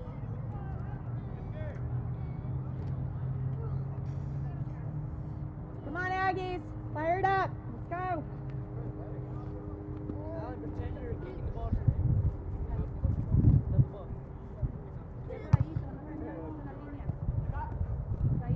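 Distant shouting of players on a soccer field: three loud calls about six to eight seconds in, with fainter calls scattered through the rest. A steady faint hum runs underneath, and there are bursts of low rumble near the end.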